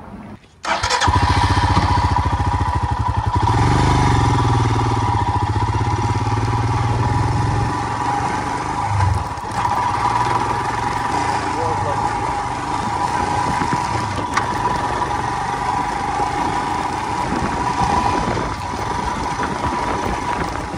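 Royal Enfield Himalayan's single-cylinder engine running as the bike is ridden, its low firing pulses cutting in suddenly under a second in. The engine is heaviest from about 3 to 8 seconds in, then runs on steadily.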